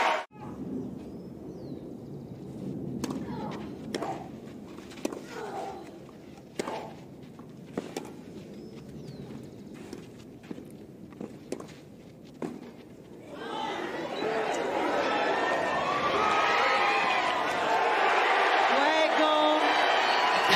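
Tennis rally on a clay court: sharp racket strikes on the ball about once a second over a quiet, murmuring crowd. About thirteen seconds in, the crowd breaks into loud cheering and applause as the point ends.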